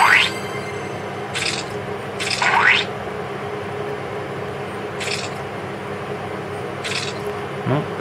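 Sound effects of a bug-squashing game from a smartphone's small speaker: two quick rising whistle-like sweeps and several short hissy splats as bugs are tapped and crushed, over a steady background hum.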